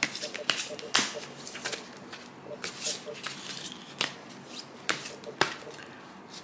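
A deck of cards being shuffled by hand: a run of irregular sharp slaps and clicks of cards against each other, the sharpest about a second in and again near four and five seconds.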